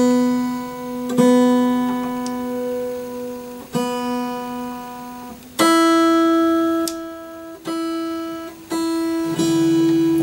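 Taylor 214ce acoustic guitar strings plucked one at a time and left to ring while being retuned after a truss rod adjustment. One string is plucked three times, then a higher string is plucked four more times from about halfway.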